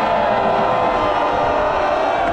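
Large crowd of football supporters singing a chant together in the stands, many voices on drawn-out notes, loud and steady.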